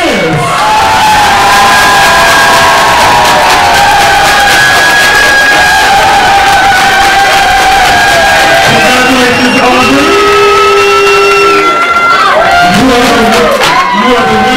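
Audience cheering loudly with long, high screams and whoops over applause as a competition winner is announced; a few low boos rise near the end.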